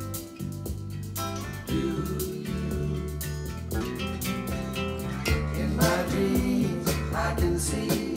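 Soft-rock recording played through home hi-fi speakers (Paradigm Mini Monitor bookshelves and Infinity Reference R2000.5 floorstanders) and heard in the room: guitar over steady bass notes, with singing voices coming in about five seconds in.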